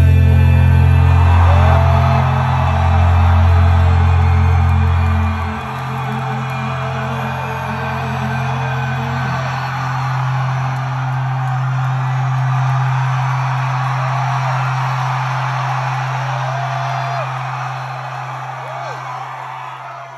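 A rock band's amplified chord held and ringing out as a steady low drone, its lowest note dropping away about five seconds in. Over it a large crowd is cheering and whooping, and everything fades toward the end.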